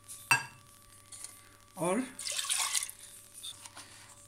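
A sharp metallic clink on the metal pressure-cooker pot, then a brief splash of water poured in over soaked red lentils a little past halfway.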